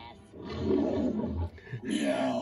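A loud, raspy roar-like cry on a cartoon soundtrack, starting about half a second in and lasting about a second, with a cartoon voice starting near the end.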